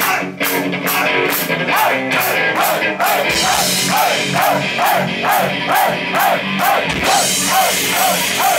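Live rock band playing loudly: drums with even cymbal strikes about three a second under a short guitar figure that repeats quickly. About three seconds in, the bass and low drums come in and the sound fills out.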